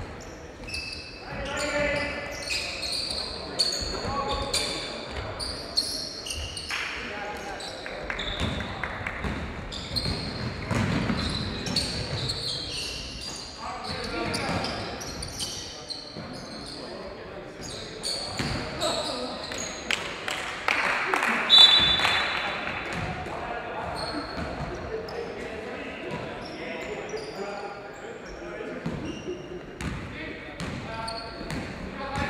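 Basketball game echoing in a large gym hall: the ball bouncing on the court floor among players' shouts and calls, with short high squeaks throughout. A loud sharp sound stands out about two-thirds of the way through.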